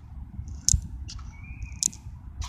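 A small bird chirping outdoors: two short, high chirps about a second apart, with a thinner call between them, over a low rumble of wind on the microphone.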